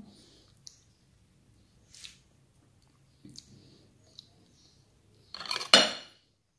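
A few faint, scattered clicks, then near the end a metal spoon scraping and clinking against a ceramic bowl, the loudest sound here.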